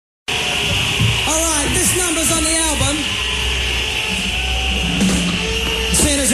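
Live band recording: a man's voice making wordless gliding vocal sounds through the PA, with instruments holding scattered notes and a steady hum and hiss under it all.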